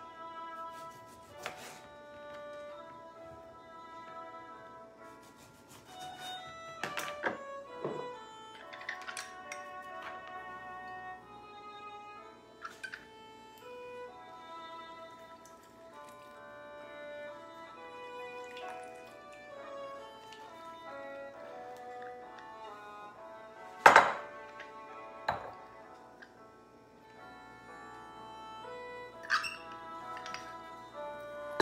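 Instrumental background music playing steadily, with scattered sharp knocks of limes being cut on a plastic cutting board and pressed in a hand-held citrus squeezer over a glass bowl; the loudest knock comes about three-quarters of the way through.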